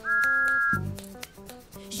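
Cartoon steam-engine whistle: one short, steady blast of two close pitches at the start, lasting under a second, over an upbeat children's song backing with a bass line.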